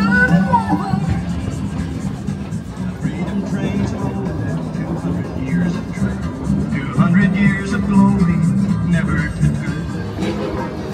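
Music playing steadily, with voices mixed in underneath.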